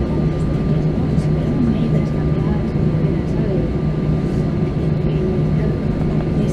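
Steady cabin drone of an Airbus A320-family airliner on the ground as it taxis, a low hum with a thin steady high whine over it, and passengers' voices murmuring underneath.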